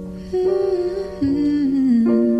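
Soft acoustic cover music: a wordless hummed vocal melody that starts about a third of a second in and steps downward, over sustained soft chords.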